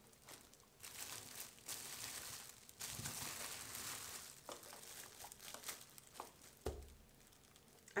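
Clear plastic shrink film crinkling and rustling softly as it is handled and pressed under a hand-held shrink-wrap sealer bar, with a few light clicks and one short low thump.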